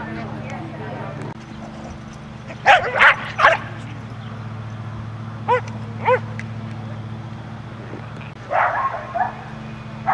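Scottish terriers barking in play: a burst of three sharp barks about three seconds in, two shorter yips in the middle, and a few more barks near the end.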